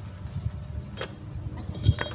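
Glass bottles clinking: a soft tap about a second in, then a sharp clink with brief ringing near the end.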